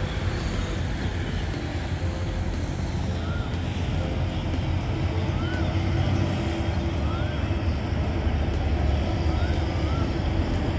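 GE GEK-class diesel locomotive running as it rolls slowly along the station tracks: a steady low engine rumble, with a held tone rising out of it about halfway through.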